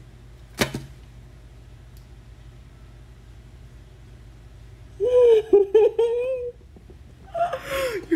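A sharp click about half a second in, then a few seconds of quiet room tone. About five seconds in comes a woman's long, high, wavering cry of excitement without words, and a shorter one near the end.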